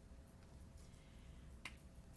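Near silence: faint room tone with a low hum and one faint click near the end.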